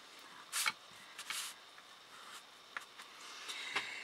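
Faint handling sounds: a tissue rubbing over MDF joints to wipe away excess glue, heard as two short, soft rustles in the first second and a half, then a small tick.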